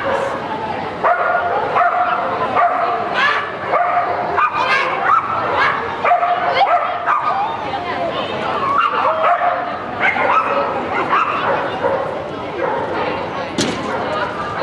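A dog barking and yipping repeatedly on an agility run, with people's voices in the background.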